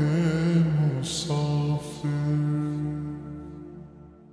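Closing held vocal notes of a slowed, reverb-heavy Urdu naat: a wordless, chant-like sung hum that trails off. It fades steadily over the last couple of seconds.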